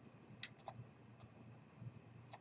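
Faint, sharp clicks of computer input devices, about seven or eight at irregular spacing, as code is selected in a text editor.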